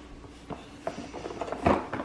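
A few light knocks and clicks of objects being handled, with a louder knock near the end.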